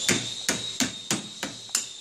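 A lead hammer striking the handle of a pin spanner six times in quick succession, about three blows a second. The blows drive the chuck's locking collar round to loosen it on the L00 long-taper spindle nose.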